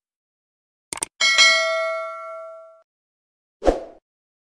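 Subscribe-button sound effect: two quick mouse clicks about a second in, then a notification bell ding that rings out for about a second and a half. A short thump near the end.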